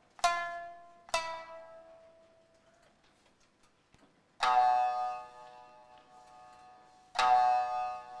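Kiyomoto shamisen accompaniment: sparse plucked notes ringing out. Two lighter strokes come in the first second, then two louder, fuller strokes about three seconds apart, each left to ring and die away.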